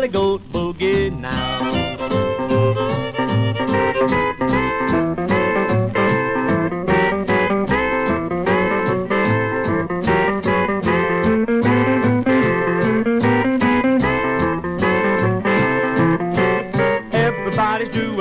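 Country boogie band playing an instrumental break with a steady beat, no singing.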